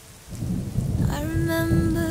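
A low rumble of thunder swells in about a third of a second in, over a rain ambience. About a second in, a single held musical note enters on top of it.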